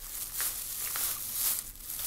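Faint handling noise: a few small clicks and rustles over a steady hiss.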